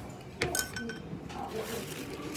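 A white ceramic rice bowl and chopsticks clinking as they are set down on a table: one sharp clink about half a second in, with a short ring, then a few lighter clinks.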